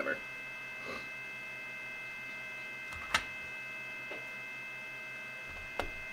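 Steady high-pitched electronic whine of several tones from the powered bench electronics, with a sharp click about three seconds in and a smaller click near the end.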